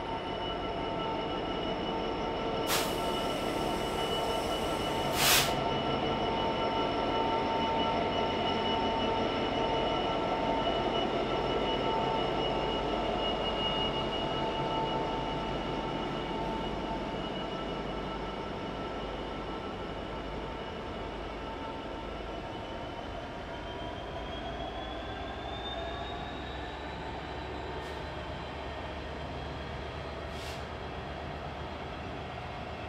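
Freight wagons of a container train rolling past, their wheels squealing in several steady high tones over the rumble of the running gear. Two sharp clanks come about three and five seconds in. Near the end one squeal rises in pitch while a lower engine rumble grows.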